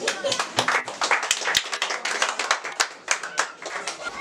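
A small group clapping by hand, many irregular claps overlapping and thinning out near the end.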